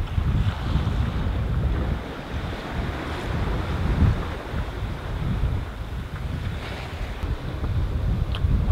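Wind buffeting the microphone on a sailboat under way, over the wash of waves on the open sea. The wind gusts unevenly and is a little stronger in the first two seconds.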